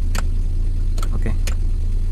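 Maruti Suzuki Alto's three-cylinder petrol engine idling steadily, heard from inside the cabin. It keeps running with a battery terminal disconnected, the sign that the alternator is carrying the car's electrics. Three sharp clicks come through over the idle.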